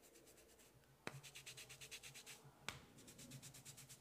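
Hands massaging oiled hair on a scalp: quiet, fast, even rubbing strokes through the hair, with two sharp clicks, one about a second in and another a second and a half later.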